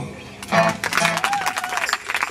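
Audience clapping and cheering, starting about half a second in, with a single voice calling out through it.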